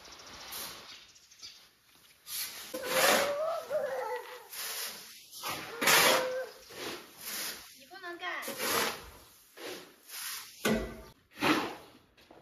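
Shovels and a rake scraping through dry wheat grain on concrete, shovelling it up for loading, in repeated rasping strokes about one every second or two. Short wordless voice sounds come in between strokes.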